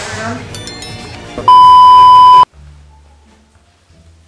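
A single loud, steady, high-pitched beep held for about a second, the plain tone of a censor bleep, preceded by a brief high chime. It cuts off abruptly, leaving only a faint low hum.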